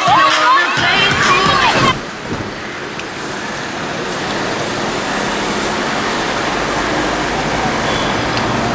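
Children shouting and cheering for about the first two seconds, then a cut to steady road traffic noise.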